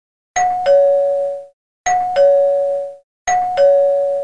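A two-tone "ding-dong" doorbell-style chime sounded three times, about a second and a half apart, each a higher note followed by a lower one.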